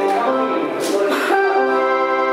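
Electronic organ or keyboard playing held chords, moving to a new chord about a second and a half in, with a brief hissy rush of noise just before the change.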